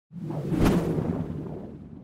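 Whoosh sound effect of a logo animation, building quickly to a hit with a low rumble about two-thirds of a second in, then fading away.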